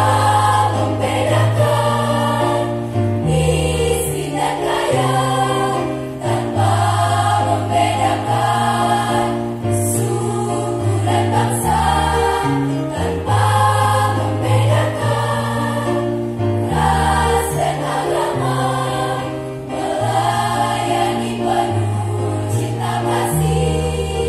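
A choir singing together, voices moving note by note in phrases over held low notes, amplified through a PA.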